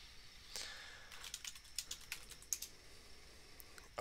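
Typing on a computer keyboard: a faint, irregular run of light key clicks.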